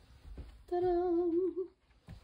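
A woman humming one held note for about a second, wavering slightly just before it stops.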